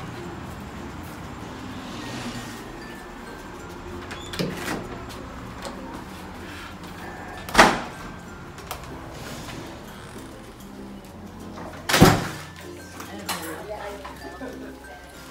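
Background music, with two loud knocks from the clinic's glass entrance door: one about halfway through as it is pushed open and a louder thud a few seconds later as it swings shut.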